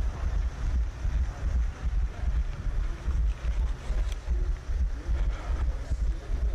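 Wind buffeting the microphone of a head-mounted action camera while the wearer runs, making an uneven, continuous low rumble.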